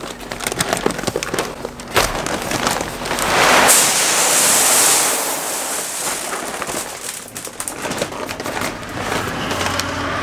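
Soybean seed pouring from a paper seed bag into an air seeder's tank: a rushing, pattering hiss that is loudest a few seconds in. The paper bag rustles and knocks as it is tipped and shaken empty.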